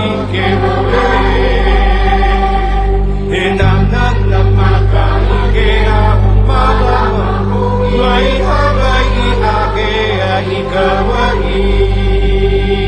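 A song sung in Hawaiian over instrumental backing, with steady low bass notes held under the singing.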